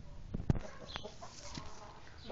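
Índio Gigante chickens clucking softly in short calls, with a single sharp knock about half a second in.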